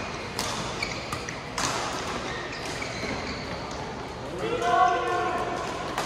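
Badminton rackets striking a shuttlecock in a rally, two sharp hits about a second apart with fainter clicks between, in a large hall. A little past halfway a voice shouts for about a second.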